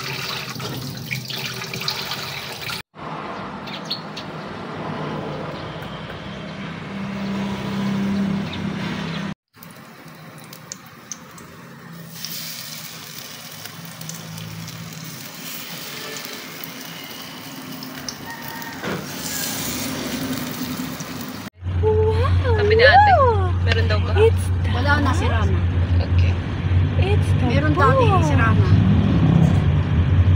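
Tap water running into a kitchen sink, then, after cuts, a stretch of steady hiss. In the loudest last part, a car's engine hums steadily, heard inside the cabin.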